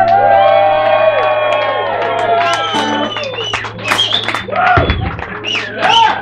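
A traditional Irish folk band on mandolin, guitar and bodhran holds its last chord, which stops just under five seconds in. A crowd whoops, shouts and cheers over the chord and after it.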